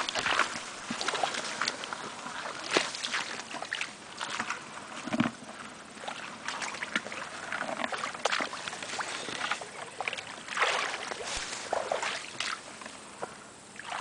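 Irregular splashing and rustling as someone wades through shallow water among reeds and grass.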